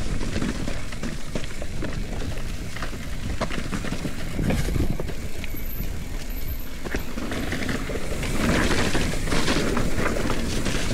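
Mountain bike rolling fast downhill on a rocky, leaf-covered trail: steady wind rumble on the handlebar-mounted camera, tyre noise and short rattles of the bike. Near the end the tyres run through dry leaves and the noise grows louder and crunchier.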